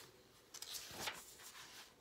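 Faint paper rustling with a couple of soft clicks as a picture book's page is turned.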